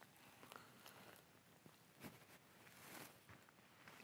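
Near silence, with a few faint, brief ticks.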